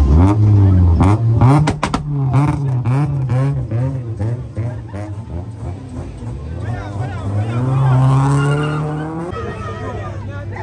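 Sixth-generation Honda Civic sedan's engine revving hard, with a rapid run of sharp exhaust pops and cracks about one to two seconds in, then repeated revs and a long rising rev that cuts off near the end.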